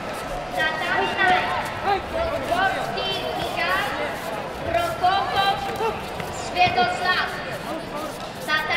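Several people shouting and calling out, high and strained, in bursts that come and go, echoing in a large sports hall.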